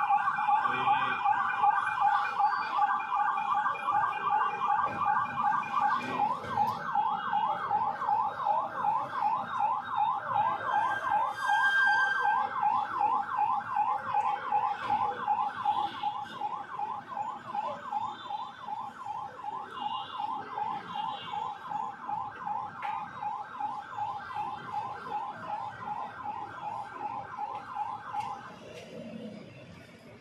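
Police convoy siren in a fast up-and-down yelp, about three sweeps a second. It fades gradually over the second half and stops near the end.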